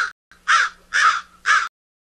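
A crow cawing repeatedly, with short harsh calls about every half second.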